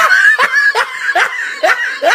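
A person laughing in short, repeated bursts, about two to three a second, each bursting up in pitch.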